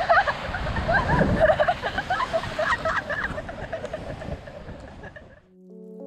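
Sea surf splashing and surging against rocks, with excited voices and laughter over it, fading out about five seconds in. Soft music with sustained chords begins near the end.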